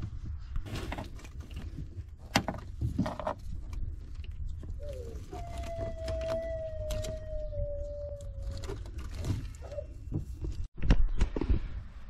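Small clicks and handling noise as the tilt motor's greased wire connectors are worked together by hand, with a faint steady whine held for about three seconds in the middle, falling slightly. A low rumble on the microphone runs underneath and grows louder after a short dropout near the end.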